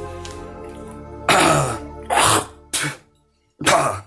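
A man coughing and hacking in four harsh bursts, the first and longest about a second in, over soft background music, as if clearing his throat on just waking up.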